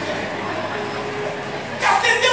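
A man's voice through a microphone and PA in a large hall, breaking in loudly near the end after a stretch of lower, hazy room sound with a faint held tone.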